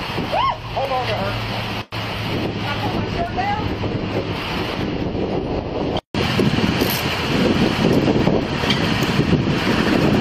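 Wind noise and rustling on the microphone, with faint voices in the first few seconds; the sound cuts out suddenly twice, briefly each time, and the noise grows louder in the second half.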